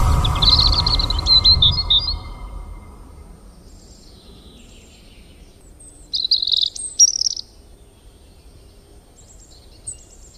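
Birds chirping in two short bursts of quick chirps, one near the start and one about six seconds in, while the low rumble of a boom dies away over the first couple of seconds.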